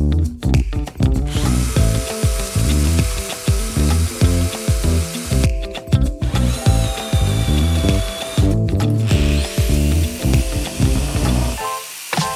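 Power drill with a step drill bit cutting into steel plate, its whine starting about a second in and breaking off briefly twice, over background music with a steady beat.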